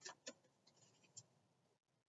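Faint, short scratchy clicks and rustles of something small being handled by hand: a few quick ones at the start, then softer ones that die away after about a second.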